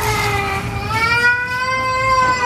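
A baby's long drawn-out cry: one wail that dips and then slowly rises in pitch.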